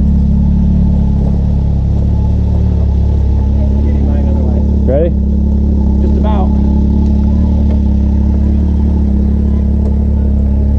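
Side-by-side UTV engine idling steadily close to the microphone, a loud, even low hum with no revving.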